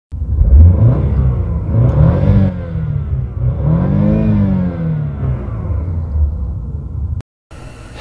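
BMW petrol engine revved in Park, climbing to about 5,000 rpm and dropping back twice. The engine sound stops abruptly shortly before the end.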